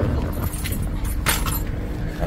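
Metal keys jingling twice, in short bursts about a second apart, over the steady low hum of the car inside its cabin.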